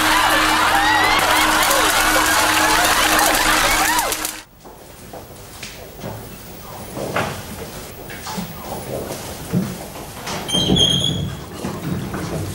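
Loud crowd noise and laughter over a steady drone, cut off suddenly about four seconds in. After that, scattered soft knocks like footsteps and a brief high creak as a wooden door with glass panes is pulled open near the end.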